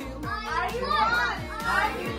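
Several children's voices calling out and chattering at once over background music with a steady low bass.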